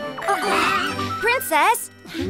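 Background music from a children's cartoon, with a brief shimmering sound effect in the first second. A cartoon character's high voice calls out about a second and a half in.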